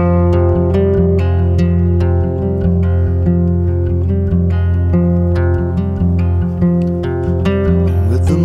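Steel-string acoustic guitar playing alone: a steady stream of picked notes ringing over sustained low bass notes.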